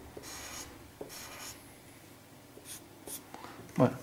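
Felt-tip marker scratching across paper in a few back-and-forth shading strokes, strongest in the first second and a half, then fainter. A short, louder vocal sound comes near the end.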